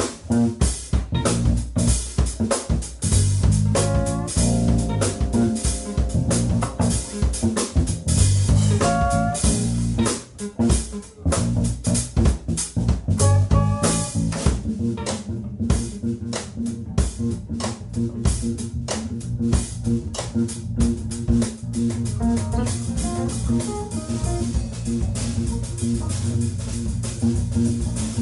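Live jazz-funk band playing with electric guitars, electric bass and drum kit: a busy drum groove under a steady bass line, with short melodic phrases rising above it a few times, and a brief drop in loudness about a third of the way in.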